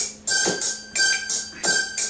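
Recorded backing track for an Iraqi song starting up: a drum-machine rhythm of tambourine-like jingles and deep kick-drum thumps, about three hits a second, over a held keyboard tone.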